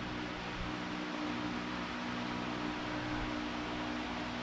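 A steady low machine hum with an even hiss over it, unchanging throughout: the background of a running appliance or fan in a small workshop.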